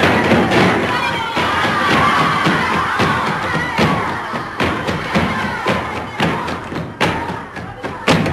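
Flamenco dancers' heels stamping on the floor in sharp, uneven beats, over a group of women shouting and cheering.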